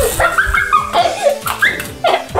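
Short, excited wordless cries and yelps from people, several in a row, over background music.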